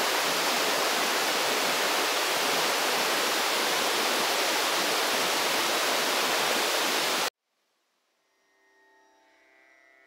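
Waterfall rushing steadily as it pours over rock; the rush cuts off abruptly about seven seconds in. After a moment of near silence, faint music fades in near the end.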